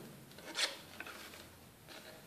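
Small scissors cutting patterned card stock along score lines: a few faint, short snips with paper rubbing between them.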